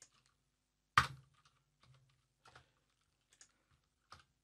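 A few computer keyboard keystrokes: one sharp key click about a second in, then several faint, widely spaced taps.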